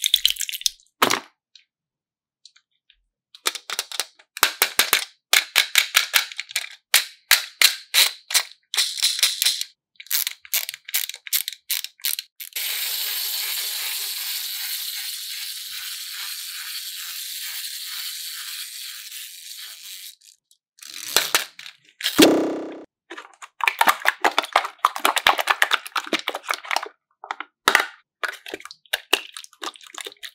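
Slime being squeezed and stretched by hand, crackling with rapid clicking pops as trapped air bursts. A steady hiss lasts several seconds in the middle, a short falling tone follows, and then the crackling starts again.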